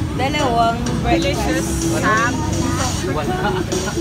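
Voices talking over background music.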